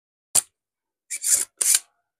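Spring-loaded desoldering pump (solder sucker) firing with a single sharp snap as it sucks molten solder off a transistor pin. About a second later come two shorter, rougher clicks from the pump.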